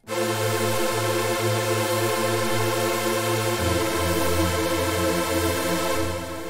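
Trance saw pad synthesised in Serum, detuned unison saw waves in the style of the Roland JP-8000, holding a sustained chord through delay and reverb. It starts suddenly, and its low notes step down to a new chord about three and a half seconds in.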